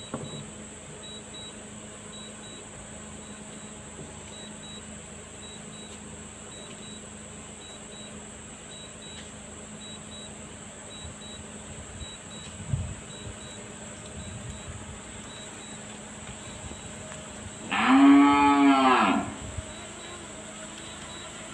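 A single loud, drawn-out cow moo near the end, about a second and a half long, rising and then falling in pitch, over a steady faint background.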